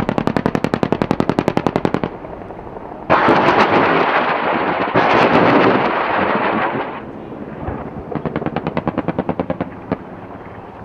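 Automatic machine-gun fire in long bursts. First comes a rapid, evenly spaced burst of well over a dozen shots a second lasting about two seconds. About three seconds in, a louder continuous ripping roar of fire follows and runs for about four seconds. Another fast burst of shots comes near the end.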